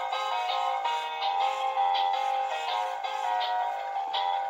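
Peanuts Animated Snoopy plush toy playing its built-in electronic tune: a tinny melody of short synthesized notes, several a second.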